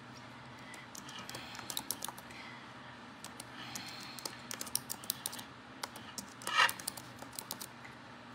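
Typing on a white Apple keyboard with numeric keypad, long fingernails clicking on the low-profile keys in several short runs of taps. There is one brief louder sound about two-thirds of the way through.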